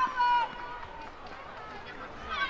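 A person's high-pitched shout in the first half second as a shot goes in on goal, then quieter open-air background noise from the football pitch.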